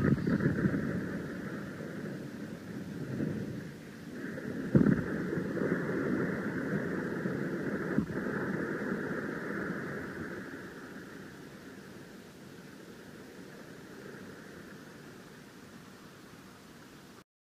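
Lo-fi punk demo cassette: after a song stops, the band's noise rings out and fades slowly into tape hiss, with a sharp thump about five seconds in and a click about eight seconds in.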